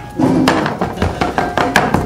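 Garlic and salt being crushed on a hard surface: a quick run of sharp knocks, about five a second, beginning just after the start.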